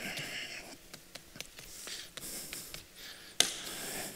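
Light, scattered taps of a small hand tamper compacting damp sand inside a plastic cylinder form, then one sharper knock near the end.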